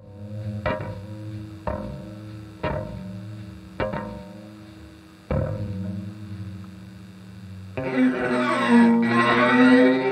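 Squier Telecaster's strings heard through its pickup, set sounding by a handheld spinner of neodymium magnets held over them. Five separate ringing notes come about a second apart, each dying away. Near the end, as the magnets sweep past faster, the strings give a louder, wavering, swirling tone.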